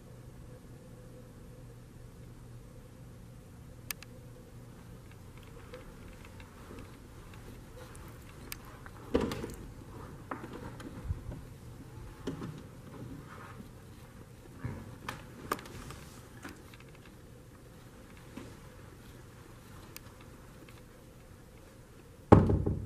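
Quiet room tone with a low steady hum, broken by scattered small clicks and knocks, the loudest about nine seconds in and more between ten and sixteen seconds in.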